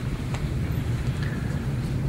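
A pause in speech filled by a low, steady rumble of room background noise, with a faint click about a third of a second in.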